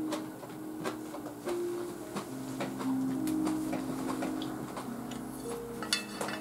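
Soft background music of held keyboard-like notes, with scattered light taps and clicks of a spoon on a ceramic bowl as someone eats.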